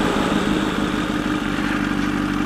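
Sport motorcycle's engine running at a steady cruising speed, one even tone, under a steady rush of wind and road noise.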